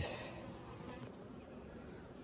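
Honeybees buzzing faintly in a steady hum.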